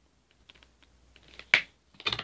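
Light clicks and rattles of small plastic art-set pieces being handled, with one louder, brief knock about one and a half seconds in.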